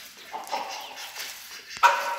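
Chickens calling while they peck at bread: short calls about half a second in, then a sharp click and a loud, held call near the end.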